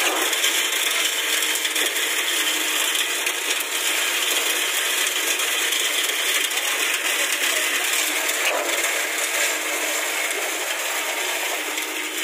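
Concrete pump delivering wet concrete through its hose into a footing: a steady, unbroken rushing noise of the concrete being pumped and poured, with no pauses.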